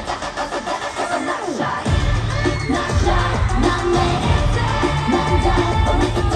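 Live K-pop dance track played loud over a concert sound system, with a female singing voice. The bass drops out for about the first two seconds, then the full beat comes back in.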